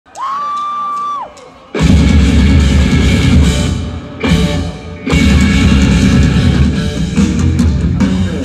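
Amplified rock band playing live: electric guitars, drum kit and keyboards. A single held high note sounds first, then the full band comes in about two seconds in, drops away briefly around the middle, and kicks back in.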